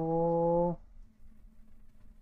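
A man's voice holding a long, steady "hmm" with closed lips, rising slightly in pitch at the start and cutting off a little under a second in, then a faint low hum.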